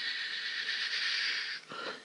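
A steady, high hiss like a drawn-out "sss" from a man's mouth, lasting about two seconds and stopping shortly before the next words.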